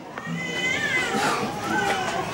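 A person's high voice wailing, sliding up and down in pitch through most of the two seconds.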